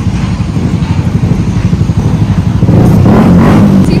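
Town-centre traffic noise, a steady low rumble that swells as a vehicle passes near the end.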